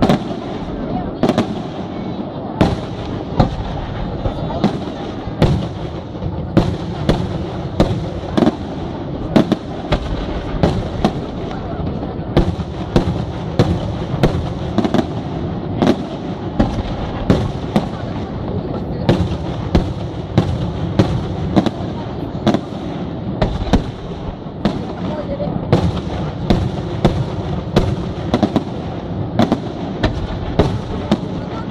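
Aerial firework shells bursting in rapid succession, sharp loud bangs about one or two a second over a continuous rumble of the display.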